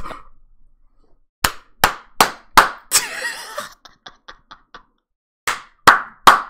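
A man laughing hard, broken into short bursts with several sharp smacks from about a second and a half in, then a run of faint clicks and two more smacks near the end.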